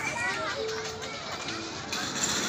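Children playing, their high voices chattering and calling out over one another.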